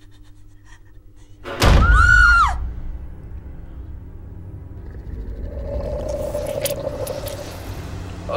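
Horror film soundtrack: a sudden loud boom about a second and a half in, with a shrill shriek that rises and falls. A low rumbling drone follows, and a held tone swells under it near the end.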